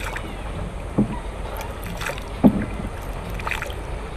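Wooden rowing boat on water: steady wind and water noise, with two dull knocks of the oar against the wooden hull, about one second and two and a half seconds in.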